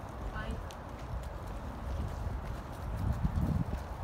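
Running footfalls of a person and a small dog on grass and dirt, as a series of soft thuds that grow louder about three seconds in as they pass close by.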